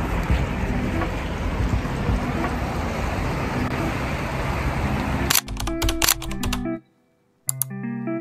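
Outdoor street noise with background music under it; a little over five seconds in, the street noise cuts off suddenly and the music plays on alone, dropping out for about half a second near the end.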